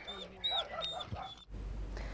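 A dog whining in short high-pitched cries, about four of them. They cut off about one and a half seconds in, leaving a quiet low hum.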